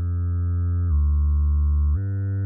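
Surge software synthesizer playing its 'Digibass' wavetable bass patch: sustained low bass notes that glide smoothly down to a lower note about a second in and back up near the end.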